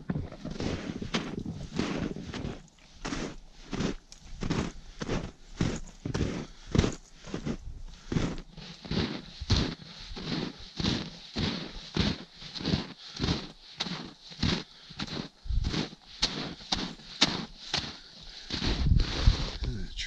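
Footsteps crunching in deep, packed snow as hikers in boots climb a trail, an even tread of about two steps a second, with a louder, deeper burst near the end.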